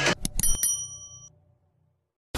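Subscribe-button sound effect: a few quick clicks followed by a bell ding that rings out and fades within about a second, then cuts to silence.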